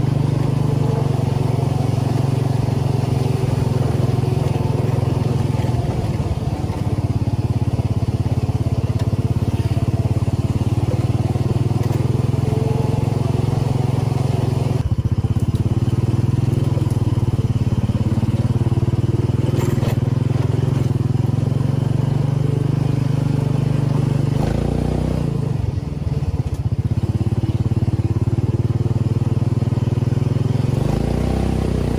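The 440cc engine of a home-built side-by-side buggy running steadily under load while driving along a dirt track, heard from the driver's seat. The engine note eases briefly about twenty-five seconds in, then picks up again.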